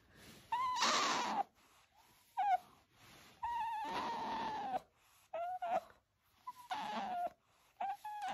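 Pet otter giving a string of high whining calls, about six in all. Some are drawn out for about a second and others are short, and each drops a little in pitch at its end.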